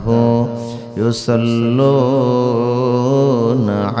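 A man reciting the Quran in Arabic in a melodic chant into a microphone, holding long wavering notes, with a short break for breath about a second in.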